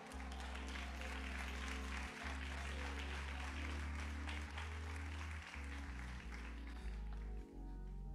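Keyboard playing soft sustained low chords that shift every second or two, with a congregation's applause over it.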